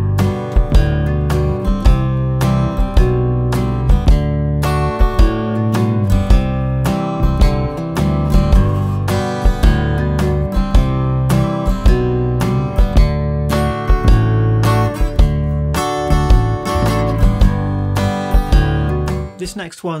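Martin D-28 dreadnought acoustic guitar played with a pick in a swinging country strum: a bass note on the low strings, then a strum across the higher strings, with swung eighth-note upstrokes and the bass notes moving around the chords. It stops just before the end.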